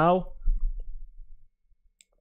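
The drawn-out end of a spoken word, then a single sharp click about half a second in, from the computer being worked.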